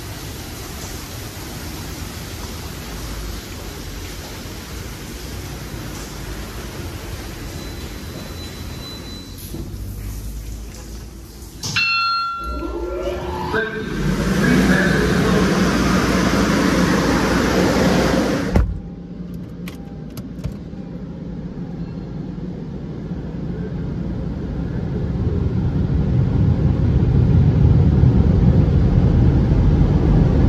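Touchless car wash machinery at the end of its cycle: a steady rushing noise, a brief falling whine, then a louder rush that cuts off suddenly partway through. After that, a car's engine and tyre rumble grow louder as it pulls away.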